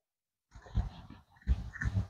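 Felt eraser rubbing across a whiteboard in two wiping strokes, the second about a second after the first.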